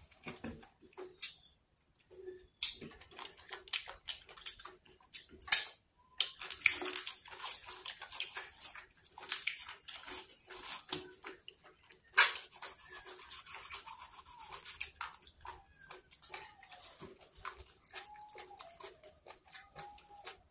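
Close-miked eating of Afang soup and fufu by hand: wet mouth clicks and chewing. Through the middle the plastic film around a ball of fufu crinkles as it is peeled off.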